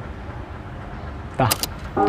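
Steady low background rumble, then, about a second and a half in, a brief vocal sound and two sharp clicks as the mouse starts the video.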